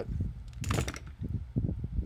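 Tools and wire being handled on a workbench, with low bumps and knocks and one short hissing rustle a little over half a second in.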